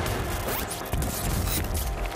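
A noisy sound-design sting over a TV segment's closing title: a dense wash of noise across the whole range over a heavy low pulse, with a few faint rising sweeps.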